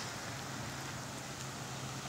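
Steady hiss of rain falling on wet pavement, with a faint steady low hum underneath.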